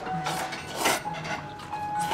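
Ramen noodles being slurped off chopsticks: two short airy slurps, the second, just under a second in, louder.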